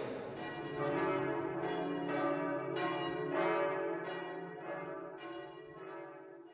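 Bells ringing in a steady series of strikes, nearly two a second, each ringing on into the next and fading out toward the end.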